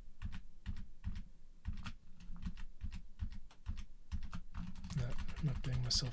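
Computer keyboard keys being tapped in an irregular run of clicks, several a second. A low voice starts murmuring near the end.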